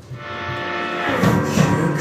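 Live band playing a song's instrumental intro, swelling up from a brief lull, with drum hits in the second half.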